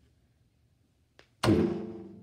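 Near silence, a faint click, then a sudden loud thump about one and a half seconds in that rings on briefly after the hit.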